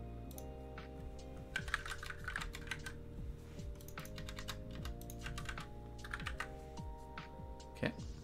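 Computer keyboard typing in two quick bursts of keystrokes, over quiet background music with steady held notes.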